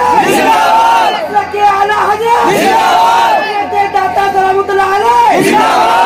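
Many voices chanting together in long, drawn-out phrases of devotional naat chanting, heard loud through a public-address system. The phrases pause briefly about every two and a half seconds.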